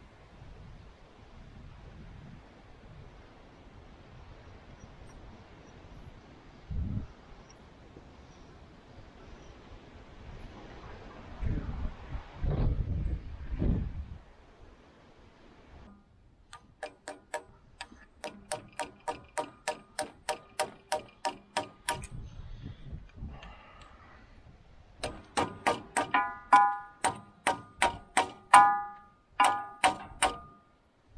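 Steady hammer blows, metal on metal, on a steel bar driving the gland back into the barrel of a loader hydraulic cylinder: about three ringing strikes a second from about halfway through. They pause briefly, then resume louder near the end. Before them there are only low handling knocks and thumps.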